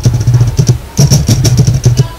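A motor running steadily with a low hum and a fast rattle, cutting off near the end.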